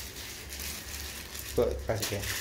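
Low rustling and handling noise of objects being moved about, with two short bits of a man's voice near the end.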